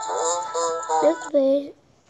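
Background music from an animated children's story app, with a cartoon character's wordless voice sound over it, both stopping abruptly near the end.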